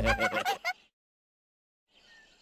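High-pitched cartoon giggling from the bunny characters, a quick warbling run that breaks off under a second in, followed by about a second of dead silence.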